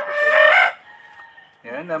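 Rooster crowing: one short, loud call lasting under a second, then a lull.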